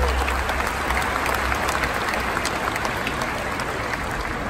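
Large stadium audience applauding, the last low note of the music dying away in the first half second.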